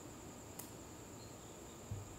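Crickets trilling, a steady high-pitched chorus over a low background hum, with one faint click a little over half a second in.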